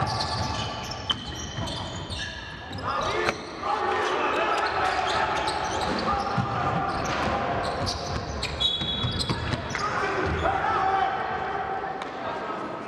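A basketball bouncing on a hardwood court with sharp knocks, short high sneaker squeaks, and voices calling out in the hall.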